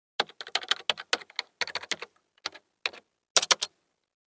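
Computer keyboard typing: a run of irregular keystroke clicks, some in quick clusters, that stops shortly before the end.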